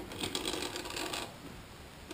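Rapid light clicking and rattling lasting about a second, from a snake inspection camera's cable being backed up inside a two-stroke engine's intake port.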